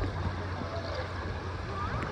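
Steady wash of moving lazy-river water, with faint distant voices of other bathers.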